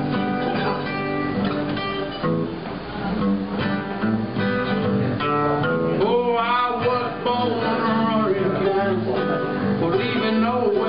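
Acoustic guitar strummed and a mandolin picked together, playing the instrumental opening of a country song.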